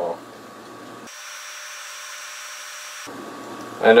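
A utensil scraping as it stirs a few grams of flour and water into a paste in a small cup: a faint, even scraping hiss for about two seconds in the middle.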